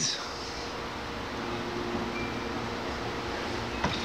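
Steady background noise, an even hiss with a faint hum, with no sanding strokes.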